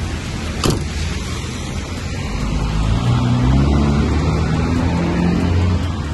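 A truck cab door shutting with a single sharp knock under a second in, followed by the low rumble of a vehicle engine that grows louder from about two seconds in.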